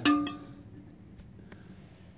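A short ringing clink at the start, then faint clicks and rubbing as the toilet's rubber refill hose and its plastic adapter clip are handled and pressed onto the plastic overflow tube inside the porcelain tank.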